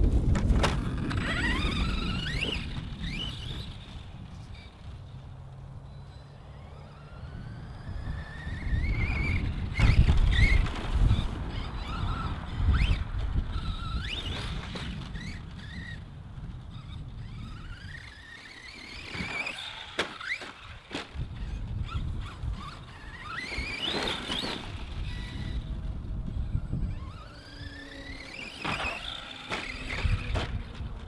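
Arrma Outcast 4S BLX RC stunt truck's brushless motor and drivetrain whining, rising in pitch with each burst of throttle, again and again, with a few sharp knocks around the tenth second. A steady low rumble of wind on the microphone lies underneath.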